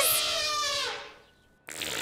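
Cartoon elephant trumpeting: the end of a harsh blare from its raised trunk, fading out about a second in.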